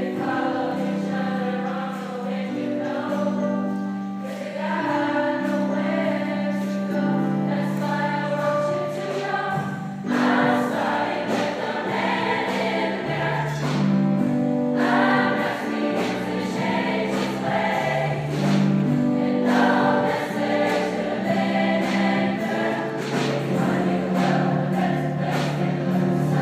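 Large choir singing in sustained, held chords. About ten seconds in the sound grows fuller as a deeper low part comes in.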